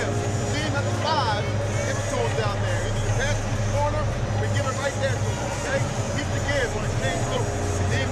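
Basketball arena crowd noise: many overlapping voices and a steady low hum, with players and a coach talking close by in a team huddle.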